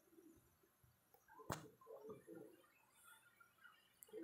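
Near silence: faint room tone with one soft click about a second and a half in, followed by a few faint, brief low sounds.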